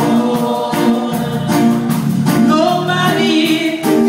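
Gospel choir singing with instrumental accompaniment and a steady beat.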